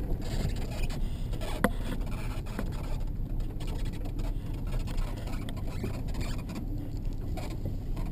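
Inside a vehicle rolling slowly along a gravel lane: steady low engine and road rumble with tyres on gravel, and one sharp click about one and a half seconds in.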